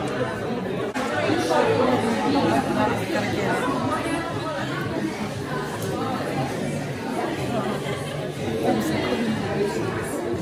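Many people talking at once around a crowded dining table: steady, overlapping chatter with no single voice standing out.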